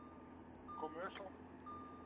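A high, steady electronic beep inside a moving car, sounding on and off about once a second, with the last beep held longer. Faint voices are heard about a second in and again near the end.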